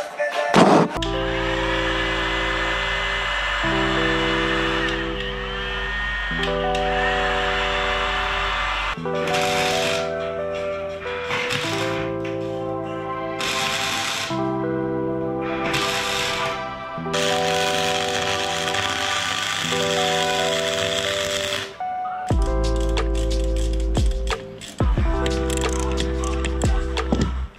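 Background music with sustained chords changing every couple of seconds, with a heavy bass coming in near the end.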